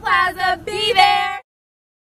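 Young women's voices in a high, sing-song chant, cut off abruptly about a second and a half in, then dead silence.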